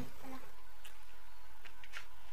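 Mouth sounds of a person eating a piece of hot dog straight off a paper plate with no hands: a few short smacks and clicks, over a steady faint hum.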